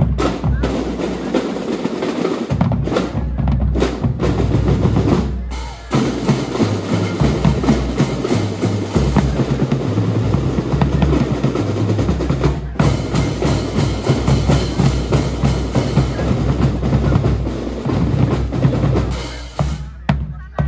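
A drum and lyre corps playing a loud percussion-led piece on massed bass drums, snare drums and cymbals, with snare rolls. It has two brief breaks and stops near the end.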